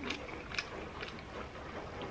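Quiet chewing of a mouthful of soft baked Vegemite-and-cheese bread scroll, with a few faint mouth clicks.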